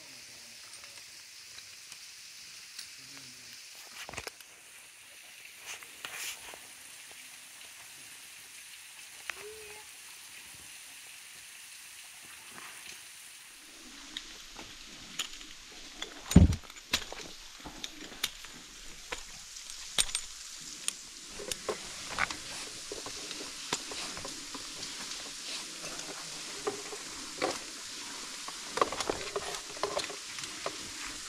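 Rappelling gear being handled: metal hardware of a rappel rack and carabiners clicking and knocking against each other and the rope, with gloved hands rustling on the rope. The loudest knock comes about halfway through. From then on a steady hiss lies under busier rattling as the descent over the edge begins.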